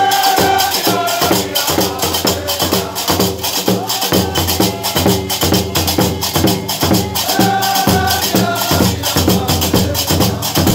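Gnawa qraqeb, large iron castanets, clacking in a fast, steady rhythm under a group of men singing a chant. Long held sung notes come at the start and again about three quarters of the way through.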